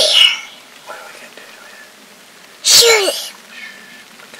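A young boy's voice: two loud, breathy vocal bursts about two and a half seconds apart, the second falling in pitch.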